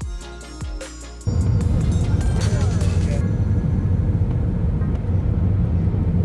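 Background music cuts out about a second in and gives way to loud, steady Airbus A319 cabin noise on final approach: a deep rumble of engines and airflow with a steady hum.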